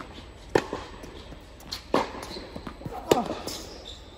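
Tennis ball struck by rackets and bouncing on an indoor hard court during a rally: three loud, sharp hits a little over a second apart with smaller knocks between, each ringing briefly in the large hall.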